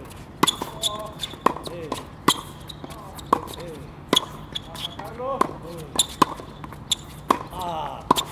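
Tennis rally on a hard court: sharp racket strikes and ball bounces, about one a second. Between the hits come short squeaks, typical of tennis shoes pivoting on the court surface.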